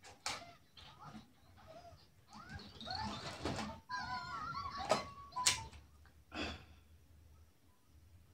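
Plastic parts of a ring light's phone holder and stand clicking and knocking as they are handled and fitted, a handful of sharp clicks spread through, the loudest about five seconds in. Faint high, wavering voice-like sounds come in the middle.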